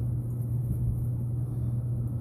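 A steady, low-pitched hum with no break or change.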